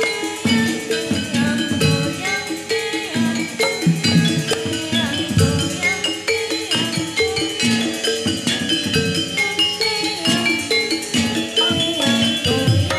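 Javanese gamelan accompanying a jathilan dance: struck bronze gong-chimes and metallophones ringing over drum hits in a steady, driving rhythm.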